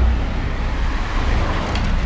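Street traffic: a car driving along the road, heard as a steady low rumble with a noisy hiss above it.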